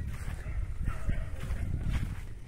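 Low rumble on a handheld phone's microphone as it is carried outdoors, with a few faint knocks about a second in.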